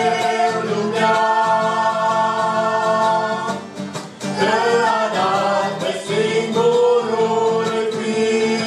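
Several voices of a family group singing a Romanian gospel song together, accompanied by acoustic guitar. One long held note runs for a couple of seconds, breaks off briefly just past the middle, and then the singing resumes.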